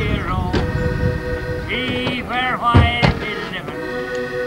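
Diatonic button accordion played with a man's singing voice over it; the voice glides up and down on held notes while the accordion sustains a steady note beneath.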